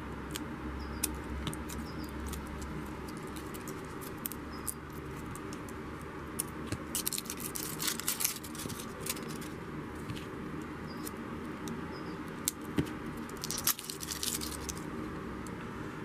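Scissors cutting open a plastic blister pack of batteries, with crinkling plastic and the loose batteries clicking against each other in the hand. The small clicks come scattered throughout, thickest a little past halfway and again near the end.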